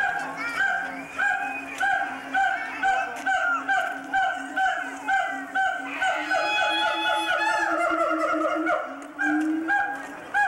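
An animal calling over and over, with short calls about two a second. From about six seconds in the call is drawn out into one longer call that rises slightly, then the short calls resume near the end.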